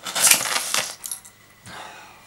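A small rocket engine on a levitating sled fires with a short, loud hiss lasting under a second. The sled flips off its magnet track and clatters onto the table, with a few sharp clicks and a second, softer rush near the end.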